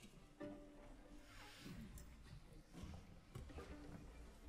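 Near silence in a concert hall: faint low thumps and shuffling from the orchestra and audience, with a few faint held tones.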